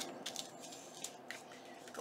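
Faint paper and fabric handling: a few soft rustles and light ticks as lace flower appliqué trim is pressed down onto a glued paper envelope and the envelope is picked up.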